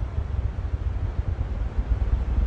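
Wind buffeting a phone's microphone: a low, uneven rumble that swells and dips irregularly.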